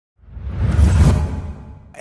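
A whoosh sound effect for an opening logo animation, with a deep rumble underneath, swelling to its loudest about a second in and then fading away.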